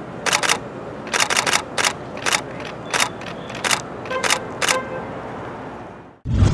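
Camera shutters clicking about a dozen times, some singly and some in quick runs of three or four, over a steady background hum of city noise.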